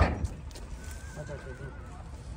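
A horse whinnying: one faint, high, wavering call of about a second, starting a little before the middle. A short sharp noise comes right at the start.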